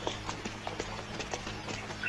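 Footsteps of several people in hard-soled shoes walking quickly down stone steps and paving: a fast, irregular patter of sharp clicks.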